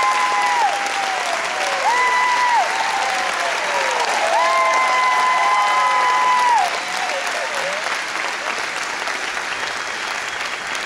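Audience applauding after a choir song, with several long, high cheers held over the clapping that slide down in pitch at their ends. The cheers die out about six and a half seconds in, and the clapping carries on a little quieter.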